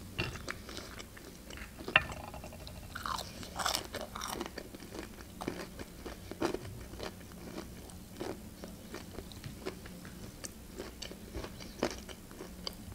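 Close-miked chewing of a pan-fried pelmeni dumpling: an irregular run of short mouth clicks and bites, with sharper ones about two seconds in and near the end.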